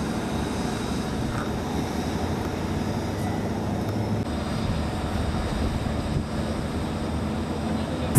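Steady low rumble of vehicle engines and road traffic, with no sudden events.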